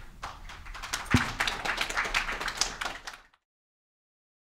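Audience applauding: a dense scatter of hand claps that stops abruptly a little over three seconds in when the sound cuts off, with one low thump about a second in.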